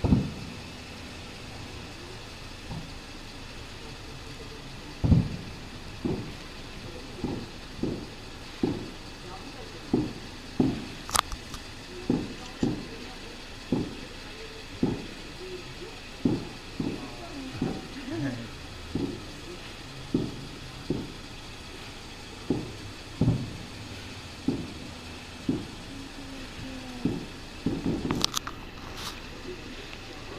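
Distant fireworks bursting: a string of short, dull booms, each fading quickly, coming about once a second from about five seconds in and bunching together near the end, with one sharper crack about eleven seconds in.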